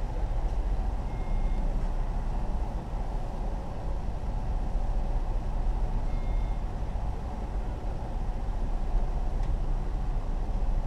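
Steady low rumble of a car idling, heard from inside the cabin, with two faint short high beeps, one about a second in and one about six seconds in.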